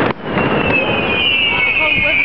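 Fireworks: a sharp bang right at the start, then a long, high whistle from a whistling firework that slides slowly down in pitch, over crowd voices.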